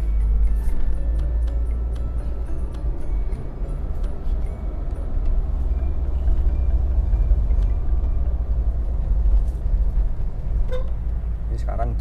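A car driving, heard from inside the cabin: a steady low rumble of engine and tyre noise.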